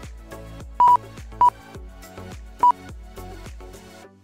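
Background music with a steady beat, broken by three short, loud electronic beeps (the first one doubled) from the lap-timing system as Mini-Z cars cross the timing line.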